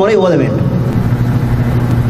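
A man's amplified speech trails off in the first half second, then a steady low hum carries on through the pause.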